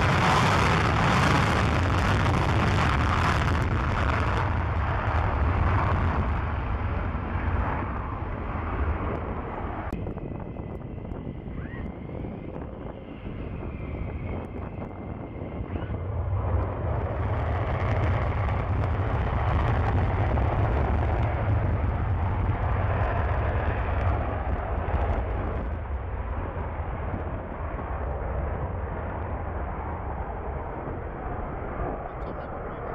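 McDonnell Douglas F-15 fighter jets taking off on full afterburner: a loud, deep, ragged jet rumble from the twin engines. It eases off around ten seconds in and comes back in full force from about sixteen seconds as the next jet rolls.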